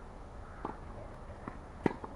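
Tennis ball hit and bouncing in a rally on a clay court: three sharp knocks, one a little over half a second in, one at about a second and a half and the loudest just before the end, when a racket strikes the ball.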